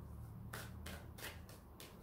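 A deck of tarot cards being shuffled by hand: a faint series of short card rustles and flicks.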